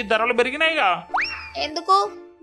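A quick upward-sliding cartoon sound effect, like a boing or slide whistle, about a second in, between spoken lines over background music.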